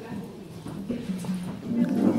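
Quiet, indistinct voices in a hall, in a lull between louder speech.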